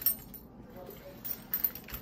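Metal buckle of a stiff new weightlifting belt clicking and clinking as the belt is wrapped around the waist and fastened: one sharp click at the start, then a quick run of clicks in the second half.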